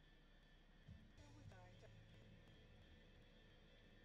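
Near silence: a faint steady low hum, with a brief faint pitched sound about a second and a half in.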